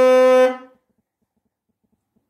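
Alto saxophone holding a long final note, which stops about half a second in and dies away quickly. Then near silence with a few faint clicks.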